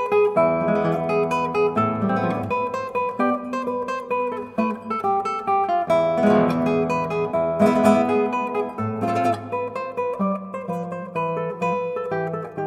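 Spanish acoustic guitar playing a malagueña afandangada, a fandango-style flamenco form, in a run of plucked notes and chords.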